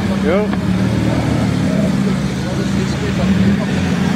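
Mercedes-Benz SLK's engine running at low, steady revs as the car pulls away slowly, a steady low drone. People's voices sound over it, with a brief rising call about a third of a second in.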